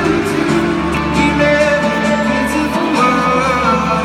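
Live pop band playing on stage, with guitar, held melody notes and singing.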